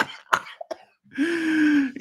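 A man's voice: a few short throaty bursts like coughs, then a brief pause and a drawn-out held vocal sound with a slight fall in pitch, just before he speaks.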